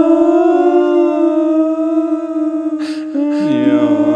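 Unaccompanied voices holding long sustained notes, the pitch wavering slightly. Near the end a brief breathy noise is followed by a lower voice entering, and the voices slide in pitch against each other.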